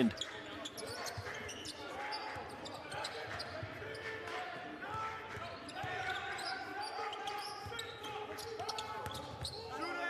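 Court sound at a basketball game: a basketball dribbled on the hardwood floor, with faint voices of players and coaches calling out across a large, echoing gym and no crowd noise.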